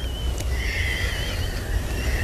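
A man's uncontrollable laughter, squeezed out high and wavering in pitch, over a steady low hum.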